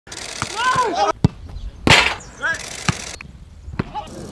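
A football being kicked back and forth over a net: several sharp thumps of foot on ball, the loudest about halfway through, with players' short shouts in between.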